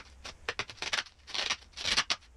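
Protective plastic film being peeled off a perspex sheet, crackling and tearing in irregular bursts, loudest near the end.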